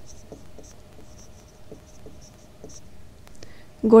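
Marker pen writing on a white board surface: a series of short, faint strokes, a few each second, over a faint steady hum.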